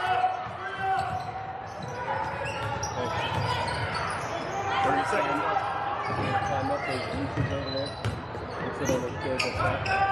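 A basketball dribbled and bouncing on a hardwood gym floor, with overlapping voices of players and spectators in the gymnasium.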